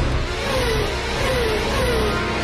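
Background music mixed with the steady sound effect of hover vehicles' engines. Three short falling tones sound over it.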